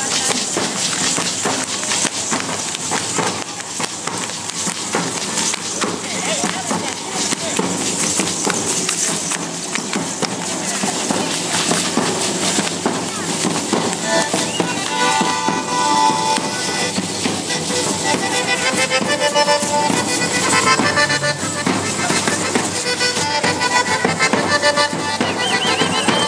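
Matachines dance music: drums beating with a crowd talking over it, and from about halfway through a sustained melody line joins the percussion.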